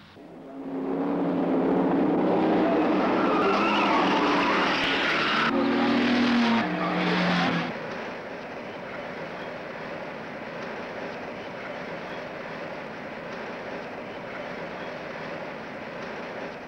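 Racing car engines revving loud and hard through changing pitches. About eight seconds in this drops suddenly to a steadier, quieter engine and road drone heard from inside a car's cabin.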